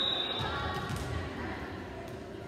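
Referee's whistle: one short steady blast that cuts off within half a second, followed by spectator chatter and a few low thuds echoing in a gymnasium.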